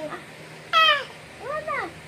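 An eight-month-old baby's high squeals: a loud one about three-quarters of a second in that falls in pitch, then a shorter squeal that rises and falls.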